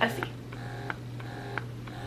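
Wearable electric breast pump's small battery motor running through its suction cycles at a turned-down suction level. It makes a faint whine and soft click in repeating pulses, about three in two seconds, over a steady low hum.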